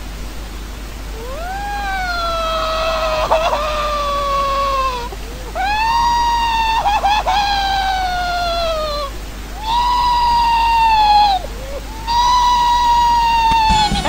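A cartoon boy's voice crying like a baby: four long, drawn-out wails, each a few seconds long and mostly sliding down in pitch, with short breaks between them.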